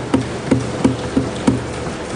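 Members of Parliament thumping their wooden desks in approval, heard as regular knocks about three a second over a dense clatter of many hands.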